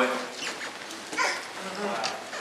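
A man's voice finishing a word and ringing on in a large hall, then brief murmured responses from the congregation about a second in and near the end, over a steady hiss.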